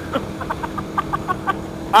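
A man laughing in a rapid string of short, staccato bursts, about six a second, that stops shortly before the end.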